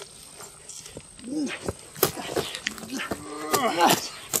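Wordless human vocal sounds: a short drawn-out cry about a second in, then a longer, louder one from about two and a half seconds in, with a few sharp clicks or claps between them.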